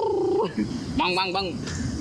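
A man's voice holding one long high call that slides down in pitch and breaks off about half a second in, followed by a few short bits of speech about a second in.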